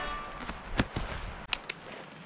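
Nylon of an inflatable sleeping mat rustling as it is shaken in the air, with a few sharp snaps.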